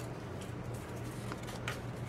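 Faint handling of a cut, folded cardstock leaf as it is opened out, with a couple of soft light clicks, over a steady low background hum.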